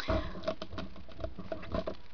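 Faint patter of small taps and rustles from cardstock being handled on the work surface, over a low rumble.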